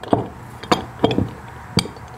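A metal screw hold-down clamp and its bolt being handled and set on a workbench: about five sharp clicks and knocks, metal clinking on metal and on the bench top.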